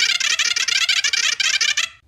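Loud, harsh, high-pitched garbled shouting from cartoon characters, a fast-chattering outburst with no clear words that starts abruptly and cuts off suddenly near the end.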